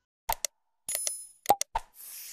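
Subscribe-animation sound effects: two short pops, then a bright bell-like ding about a second in, followed by a few sharp clicks near the end.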